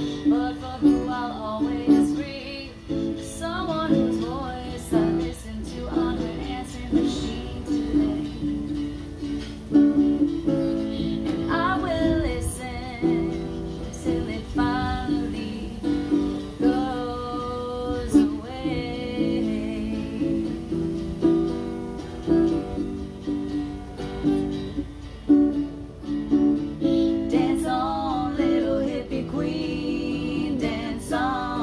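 Acoustic guitar strummed as accompaniment to female singing.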